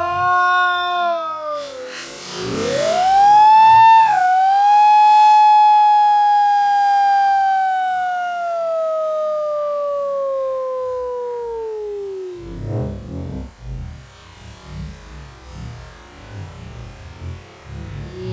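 A person's shout stretched and pitched down by slow-motion playback: one long call that rises, then slides slowly downward for about eight seconds, sounding like a siren. About two-thirds of the way in it gives way to a deep, slowed rumble of churning water.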